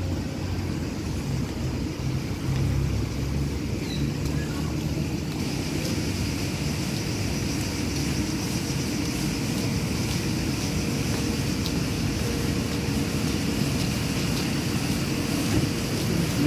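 Steady outdoor noise: a low, uneven rumble throughout, joined about five seconds in by a brighter rushing hiss.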